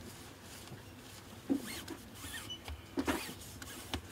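Zoom ring of a Fujinon XF18-135mm zoom lens being turned by a cotton-gloved hand, with two short rubbing squeaks about a second and a half apart and a light click near the end.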